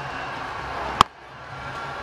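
Cricket bat striking the ball once about a second in: a single sharp crack, out of the middle of the bat for a six. It sounded gorgeous.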